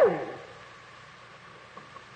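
A pause in a man's preaching: his last word fades out in the first moment, then only a faint, steady hiss of the old recording remains.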